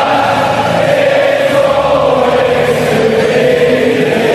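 Many voices singing together in one loud, unbroken chant.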